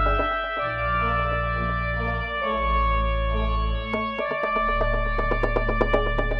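Organ and synthesizer music held in D major: sustained chords over deep pedal bass notes, changing about every two seconds, with quick percussive ticks that grow busier in the last two seconds.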